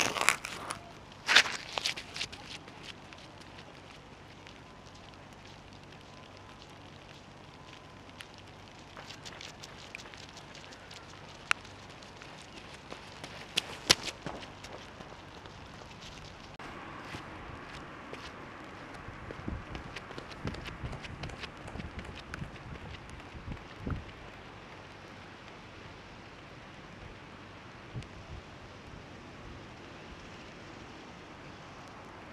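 Faint outdoor ambience with a low steady noise floor and scattered small clicks and crackles. A few sharp knocks in the first two seconds come from the camera being handled as it is set on the wet ground.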